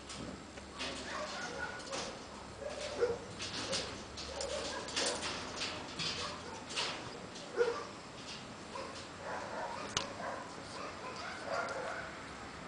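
Rustling, swishing and light knocks as a young cat leaps and bats at a feather wand toy, with a few short animal calls among them.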